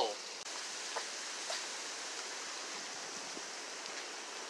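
Steady outdoor background hiss with no voices, and a faint click about a second in.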